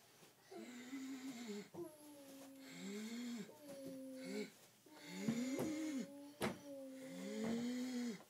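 A man's mock zombie moans: a string of drawn-out, rising-and-falling groans, with a couple of sharp clicks in between.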